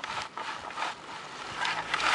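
Long grass rustling and scraping against a small plastic toy vehicle as it is pushed through, with a few soft knocks.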